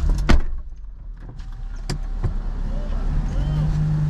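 Sounds inside a car: sharp clicks about a third of a second and two seconds in, with a thump just after the second, over a low steady hum from the car.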